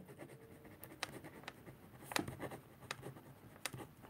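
Pen writing on paper: faint, irregular scratches and light ticks.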